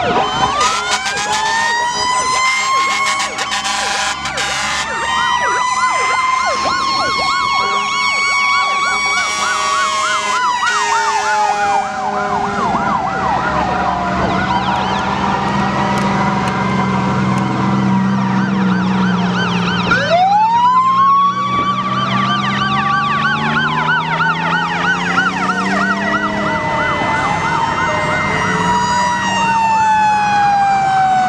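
Several fire truck sirens sounding together as a line of old fire engines drives past: long wails rising and falling, one climbing sharply about two-thirds of the way in, over a fast warbling yelp. Horn blasts sound in the first few seconds.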